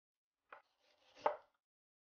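Chef's knife strokes on a wooden cutting board: a short knock about half a second in, then a longer, louder slicing stroke that ends in a knock on the board.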